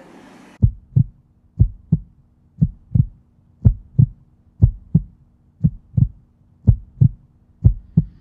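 Low double thumps like a heartbeat, one pair about every second, over a faint steady hum.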